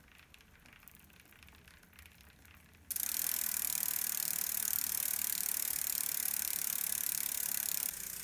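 A bicycle's rear single-speed freewheel ticking rapidly and steadily as the wheel spins. It starts abruptly about three seconds in, after a few faint handling clicks on the chain.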